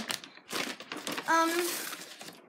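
Plastic Skittles candy bag crinkling as it is handled, with a girl's short 'um' partway through.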